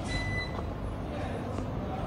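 A single short electronic beep a moment in, over steady low background noise.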